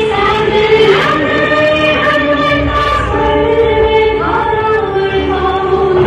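Choral music: voices singing long held notes, with a couple of rising sweeps in pitch about one second and four seconds in.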